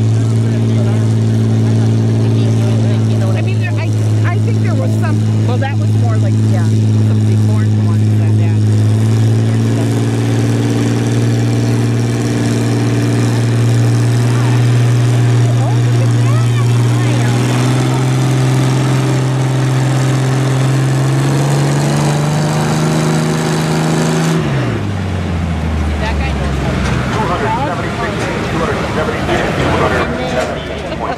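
Farmall tractor engine running at full throttle under load as it drags a weight-transfer sled, a loud steady drone whose pitch slowly climbs. About 25 seconds in the throttle is cut and the engine note drops quickly to a low idle.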